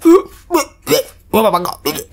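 A voice making three short gulping sounds, each a quick glide in pitch, as of something being swallowed in big mouthfuls, followed near the end by a brief spoken exclamation.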